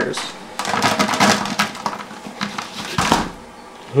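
Frozen army worms poured from one plastic bucket into another plastic bucket with a strainer basket, clattering as they fall for about two and a half seconds, with a sharper knock near the end of the pour.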